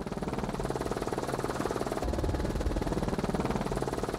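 Helicopter rotor and engine noise: a fast, even chop over a steady low hum, with a heavier rumble about halfway through.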